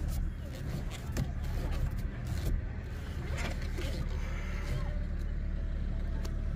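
Steady low rumble of a car's engine idling, heard from inside the cabin, with a few faint clicks.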